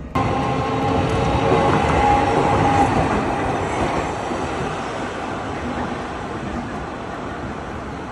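Sapporo streetcar passing on street tracks: the rumble of its wheels and running gear with a whine during the first few seconds, then fading steadily as it moves away.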